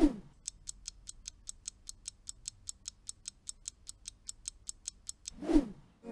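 Quiz countdown-timer sound effect: a clock ticking evenly, about five ticks a second. A short whoosh comes at the start and another near the end.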